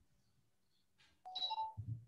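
A brief crackle, then two short electronic beeps, the second a step higher than the first, coming through a video-call connection that is breaking up.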